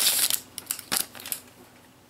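Foil trading-card booster pack wrapper crinkling as the cards are slid out, stopping about half a second in. A few light clicks of the card stack follow.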